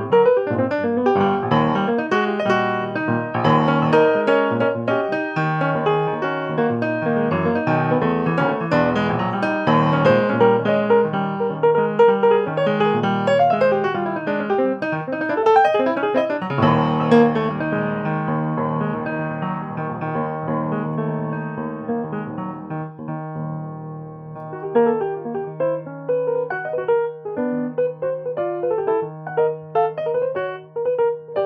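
Solo jazz piano played on an acoustic piano: busy runs and chords through the first half, then a low bass note struck about halfway through and held under sparser, quieter phrases toward the end.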